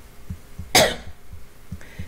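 A man's single short cough.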